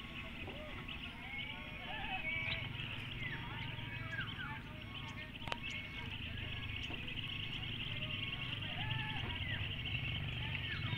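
Outdoor ambience of a steady high insect buzz with scattered short bird chirps over a low rumble, and a single sharp click about five and a half seconds in.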